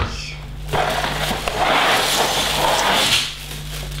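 Cardboard LEGO set box being opened, with the plastic bags of bricks sliding out onto the cloth-covered table: a rustling that starts about a second in and lasts a little over two seconds. A steady low hum runs underneath.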